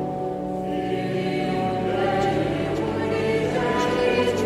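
Choir singing slow sacred music in long held notes.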